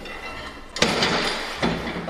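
Plastic folding table with metal legs being handled and set up: a sharp knock a little under a second in, clatter after it, then another knock near the end.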